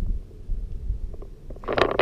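Low, uneven rumble of wind and handling noise on a handheld camera's microphone, with a short rushing burst near the end.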